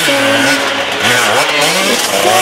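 Dirt bike engine revving up and down as the throttle is worked, its pitch rising and falling repeatedly.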